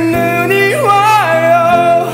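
A man singing a slow ballad over a recorded instrumental backing track. About a second in, his voice slides up and holds a wavering note.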